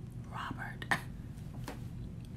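A person's voice, quiet and half-whispered, with a short sharp click about a second in.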